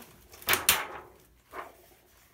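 Thin plastic sheet from an LCD monitor's backlight being handled and lifted out of its metal frame: two sharp clacks close together about half a second in, then a softer one.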